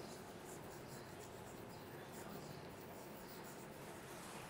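Chalk writing on a blackboard: faint, irregular scratches and taps of the chalk as letters are written.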